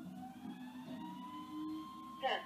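Natural-gas rear-loader garbage truck revving up to drive its hydraulics, a rising whine that levels off after about a second while a cart is emptied into the hopper.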